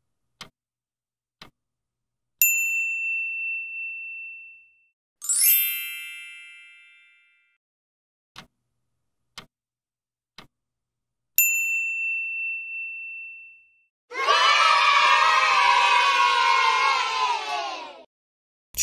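Quiz-show sound effects: faint stopwatch ticks about once a second, a single bell ding that rings and fades, then a brighter many-toned chime. Another round of ticks and a second ding follow. The last four seconds are a loud cheering crowd of children.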